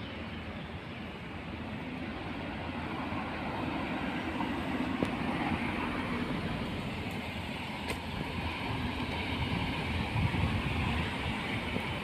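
Road traffic noise, a steady rush of passing vehicles that grows louder over the first few seconds.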